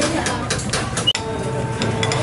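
Light clinks of metal spoons against ceramic bowls in a busy noodle-shop kitchen, with a low background din; about a second in the sound breaks off for an instant and a steady low hum follows.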